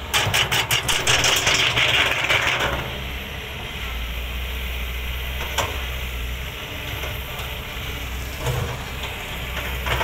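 Kobelco SK200 hydraulic excavator's diesel engine running, opening with a loud clattering, rushing burst for about three seconds, then a steady low drone with a couple of single clanks.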